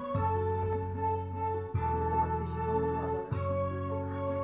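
Instrumental intro of a karaoke backing track: sustained electronic-organ keyboard chords over a bass line, changing chord about every second and a half.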